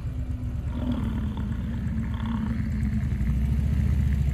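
A rutting bull American bison roaring: one long, deep, rumbling bellow, a challenge display of the rut.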